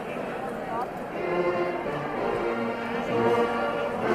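A national anthem begins: slow orchestral music with brass, sustained chords coming in about a second in.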